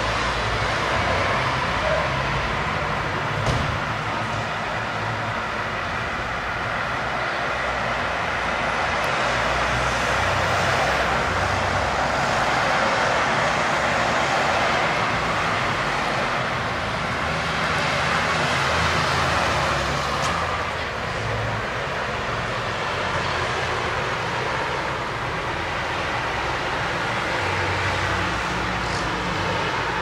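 Road traffic: a steady rush of passing cars' tyres and engines that slowly swells and eases.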